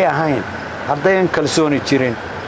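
Only speech: a man talking, with a short pause about half a second in before his voice resumes.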